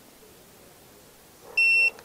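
Tire pressure monitor's display unit giving one short, high-pitched electronic beep near the end, as the unit locks in the PSI setting and goes back to showing the tire pressures.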